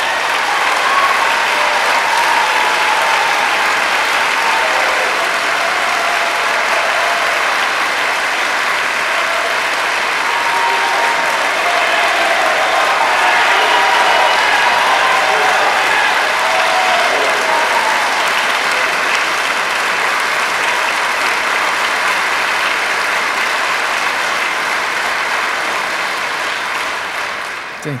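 Audience applauding loudly and steadily for a long stretch, with a few voices calling out over the clapping; it dies away just before the end.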